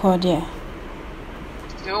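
Speech in a recorded conversation: a voice trails off early, then about a second and a half of steady background hiss, and speech resumes near the end.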